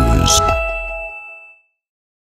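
Intro jingle ending on a bright chime that rings out and fades over about a second, then silence.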